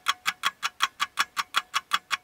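Fast, even ticking, about five or six sharp ticks a second, used as a sound effect over the intro graphics.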